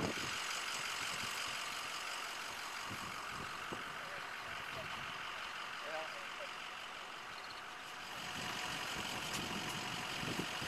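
Steady outdoor background noise, an even hiss with no distinct event standing out.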